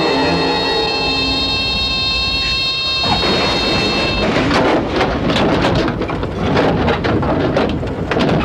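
A Cessna light plane crash-landing: a sudden crash about three seconds in, then loud rough scraping and rumbling as the plane slides over the ground. Before the crash, a steady high tone sounds and stops about a second after it.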